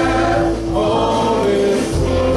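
Gospel worship music: a group of voices singing long held notes over instrumental backing, moving to a new note about halfway through.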